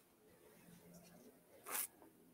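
Faint handling noise with one short, sharp rasp near the end: flexible beading wire and a hand brushing over the poster-board work surface as the wire ends are picked up.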